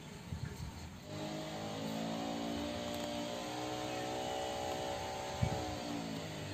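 A motor vehicle's engine runs with a steady droning hum from about a second in, its pitch sagging slightly in the second half. A short knock comes about five seconds in.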